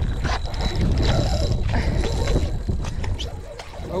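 Wind buffeting the microphone, with the handling noise and soft whir of a spinning reel being cranked during a fight with a fish.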